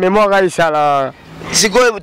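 Speech only: a voice talking, with a long drawn-out syllable in the first second.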